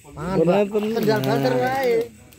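Loud, drawn-out human voices calling out, two pitches overlapping at times, starting just after the beginning and stopping at the end.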